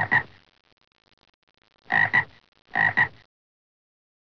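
Three short frog-like croaks, each a quick double pulse: one at the start, one about two seconds in and one just before three seconds.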